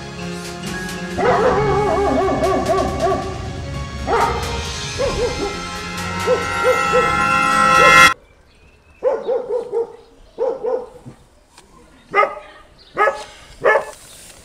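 Music plays and cuts off suddenly about eight seconds in. In the quiet that follows come six short yelping calls, in twos and threes, from an animal such as a dog.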